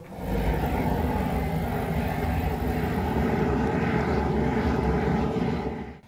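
Steady low rumble of a metal animal incinerator running while it burns. The sound starts suddenly and stops near the end.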